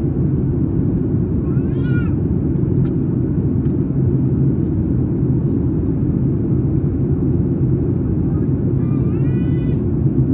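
Steady cabin noise of a Boeing 737 airliner in descent, heard from a seat over the wing: engine and airflow noise, heaviest in the low range and even in level. A voice rises briefly over it twice, a couple of seconds in and near the end.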